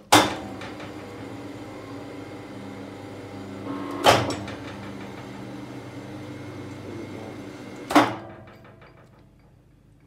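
Electric rebar bender running a bend cycle: a loud clunk as the motor starts, a steady gearbox hum, a second clunk about four seconds in and a third near eight seconds, after which the hum runs down and fades.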